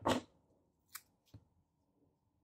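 A single snip of scissors trimming a paper sticker, followed by two faint clicks about a second later.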